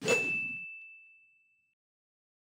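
Logo sound effect: a short soft thump with a single high ding that rings on and fades away over about a second and a half.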